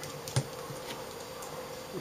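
A single sharp metallic click about a third of a second in, from small screws and hands working at the LCD panel's metal frame, over a steady background hum.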